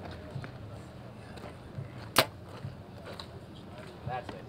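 A single sharp crack of a bow being shot, about two seconds in, over a low background murmur.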